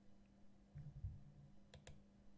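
Near silence broken by two quick computer-mouse clicks in close succession near the end, with a faint low bump about a second in.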